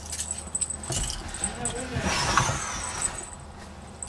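Keys jangling and clothes rustling as a person climbs into a car's driver's seat, with a sharp click at the start and a louder rustle about two seconds in.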